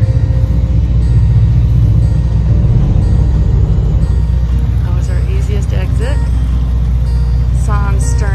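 A steady low rumble under background music, with faint voices in the second half.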